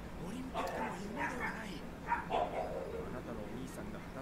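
Quiet dubbed anime dialogue: a character speaking lines, played at low volume.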